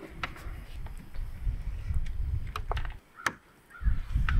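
A station wagon's liftgate being handled with a new gas strut just fitted: a low rumble with a few sharp clicks, the loudest about three seconds in.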